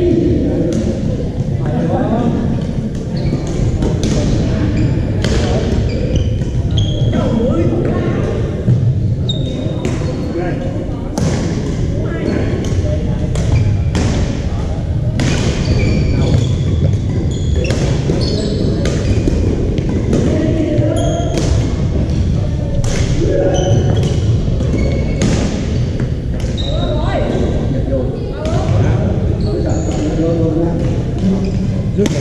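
Badminton play in a large, echoing gym: repeated sharp racket strikes on shuttlecocks, short squeaks of sneakers on the hardwood floor, and players' voices in the background.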